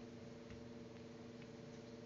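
Faint light ticks from tarot cards being handled on a table, two soft clicks over a steady low hum.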